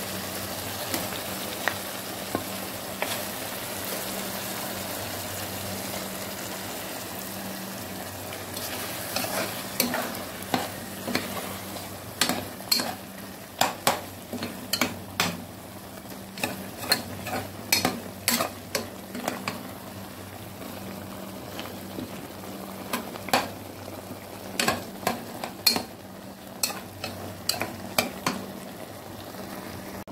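Food sizzling in a pot, and from about a third of the way in a ladle stirring mung beans, meat and tomatoes, knocking and scraping against the pot in a quick, irregular series of clicks.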